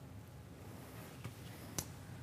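Faint room hum with a single sharp click near the end and a fainter click a little earlier.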